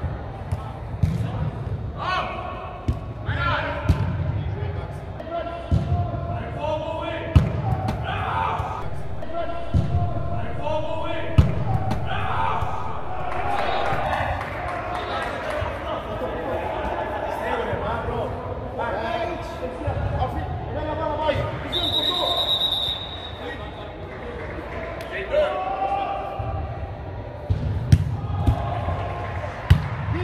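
Indoor soccer in a large, echoing turf hall: the ball being kicked and bouncing with sharp knocks, and players shouting to each other. A single short whistle blast, most likely the referee's, comes about two-thirds of the way in.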